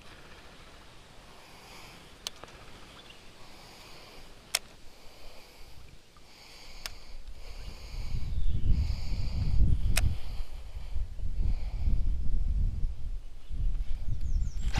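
Baitcasting reel being cranked in short spells as a hooked fish is played, with a few sharp clicks. From about eight seconds in, heavy low rumbling buffets the microphone.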